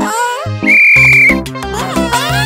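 A referee's whistle blown once: a single steady, shrill blast lasting under a second, starting about two-thirds of a second in. Bouncy cartoon background music plays around it.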